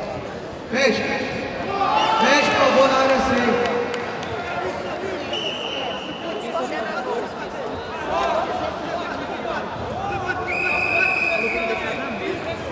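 Untranscribed voices calling out in a large sports hall, loudest about one to four seconds in. Two brief, steady high-pitched tones sound over them, one about five seconds in and one near the end.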